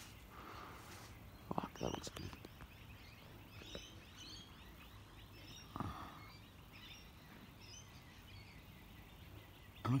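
Quiet outdoor background with faint, scattered bird chirps, and a couple of brief louder sounds about two seconds in and near six seconds.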